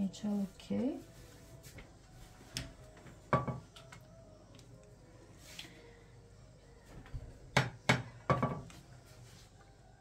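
A handful of light kitchen knocks and clinks from hands working at a pizza baking tray as grated cheese is sprinkled over the pizza, several close together near the end.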